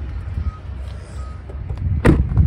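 Low rumble of wind and handling noise on a phone microphone, with two faint short beeps.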